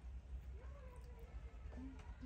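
Baby macaque giving one drawn-out, wavering whimper about half a second in, a begging call as it climbs after the food in a person's hand.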